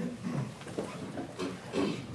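Faint, indistinct voices of people talking away from the microphone.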